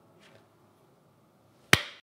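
A single sharp hand clap near the end, dying away quickly in the room, over faint room tone.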